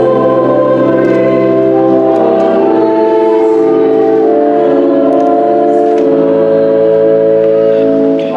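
A hymn: organ playing long held chords while the choir and congregation sing along, the chords changing every second or so.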